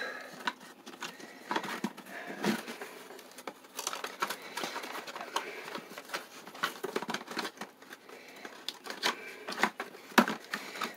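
A cardboard box being handled as a lantern is pushed back into it: irregular small clicks, taps and scrapes of cardboard flaps and the item's plastic shell.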